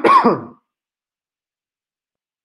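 A man clears his throat, a short loud voiced rasp that ends about half a second in.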